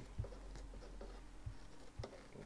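Faint scratchy snips of small appliqué scissors cutting fusible fleece, with a short click about a fifth of a second in and another about a second and a half in.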